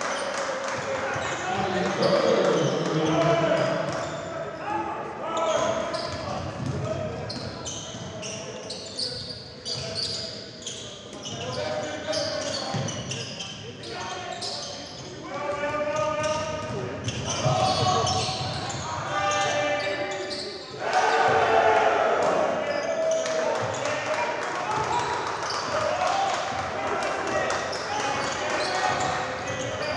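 Live basketball game sound in a gym: the ball bouncing on the hardwood court while players and coaches call out, all echoing in the hall.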